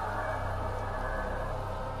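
Sustained ambient drone of documentary background score: a steady chord of held tones over a low hum, its upper tones fading out about one and a half seconds in.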